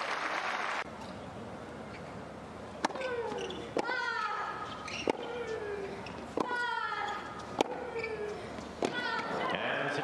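Tennis rally on a hard court: about six racket strikes on the ball, a little over a second apart, each with a player's grunt falling in pitch. A short burst of crowd noise is cut off at the start.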